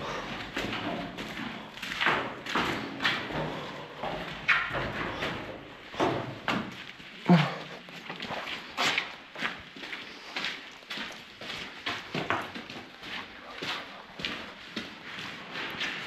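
Footsteps on a gritty concrete floor, irregular steps about one or two a second.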